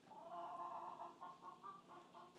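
Faint animal calls, one longer call followed by several short ones.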